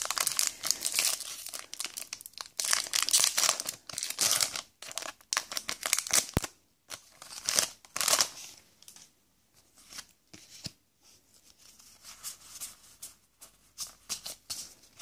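Foil wrapper of a Pokémon trading card booster pack being torn open and crinkled, in bursts through the first eight seconds or so. After that come fainter, scattered rustles as the cards are slid out and handled.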